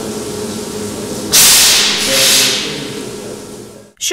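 Steady low machinery hum in a trolleybus depot. About a second in, a sudden loud hiss sets in, surges twice and then fades away over the next two seconds.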